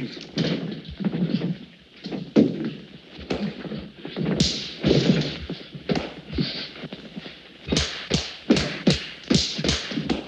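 Two men scuffling: a string of thuds and knocks with grunts. The blows come faster, about two a second, in the last two seconds.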